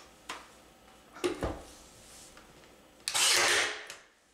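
Nail gun driving nails into a wooden batten: a few sharp shots, the loudest about a second and a half in, then a louder burst of hissing noise lasting most of a second near the end.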